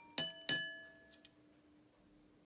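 A drinking glass nearly full of water tapped twice in quick succession, each tap ringing a clear, fairly low glass note that fades within about half a second; two faint light ticks follow.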